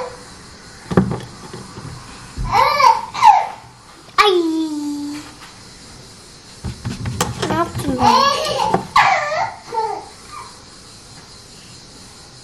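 Short bursts of wordless voices, mostly a child's, babbling and making a long falling vocal sound, with a couple of knocks in the first few seconds.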